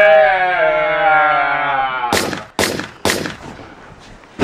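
Men singing one long held final note that slides slowly down in pitch, then three loud sharp bangs about half a second apart.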